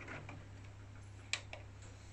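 Sony CDP-C315 five-disc CD changer's mechanism ticking faintly as it loads a disc and starts play, with one sharp click a little over a second in and a softer one just after, over a low steady hum.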